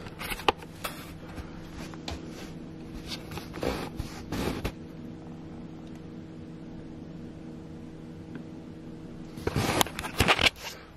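Handheld camera handling and hoodie rustle, with a few sharp clicks and scuffs as he steps barefoot onto a digital bathroom scale on tile. After that a steady low hum, until the handling noise comes back near the end.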